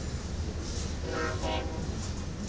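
Freight train's diesel locomotives and cars running past with a steady low rumble, and a short horn blast about a second in.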